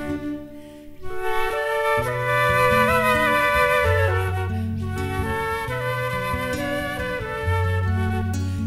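Instrumental music: a concert flute plays a slow melody, with vibrato on a held note, over an acoustic guitar's accompaniment and bass notes. The music thins to a brief lull about half a second in, then picks up again.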